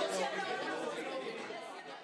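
A group of people talking over one another, an unintelligible babble of several voices that fades steadily away.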